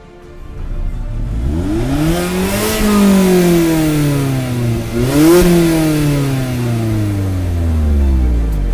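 A 2017 Mazda MX-5 RF's 2.0-litre four-cylinder engine revved twice while standing: the pitch climbs to a peak about three seconds in and falls away, then a quicker blip about five seconds in dies slowly back toward idle near the end.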